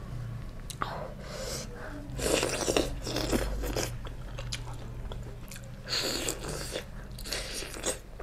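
Close-miked chewing and biting of a mouthful of chicken curry and rice, with wet, crunchy mouth sounds in irregular bursts, loudest from about two to four seconds in.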